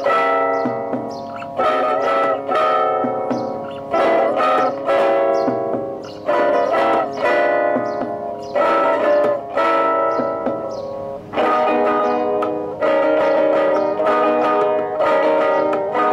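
Solo ten-string classical guitar played fingerstyle: a slow prelude of plucked melody notes and chords in short phrases, with vibrato on some held notes.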